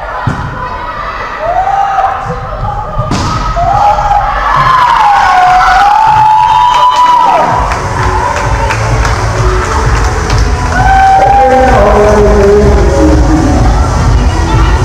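Volleyball players shouting and cheering after winning a point, with long drawn-out cries and a single thud about three seconds in. From about halfway through, loud music with a heavy bass plays over the hall's speakers.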